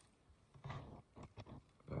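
Faint mealtime handling sounds: a short low throat sound about half a second in, then a few light clicks of plastic cutlery against a food container.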